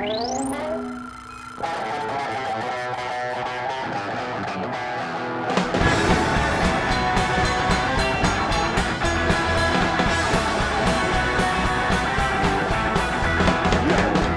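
Live rock band playing with electric guitar. A tone sweeps steeply upward at the start, then the full band with drums and bass comes in about six seconds in.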